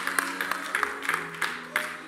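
Soft sustained keyboard chords played under the sermon, the held notes shifting to a new chord about halfway through, with scattered hand claps from the congregation.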